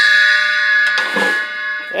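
Meinl bell cymbal ringing after a single strike, bright and pingy, its many overtones fading slowly. A brief softer noise comes about a second in.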